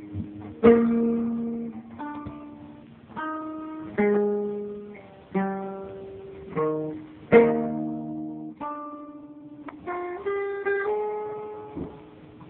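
Acoustic guitar played solo: chords struck about once a second, each left to ring and fade, with a few quicker picked notes near the end.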